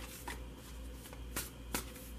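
Tarot cards being shuffled in the hands: about four light clicks of card stock over a low steady hum.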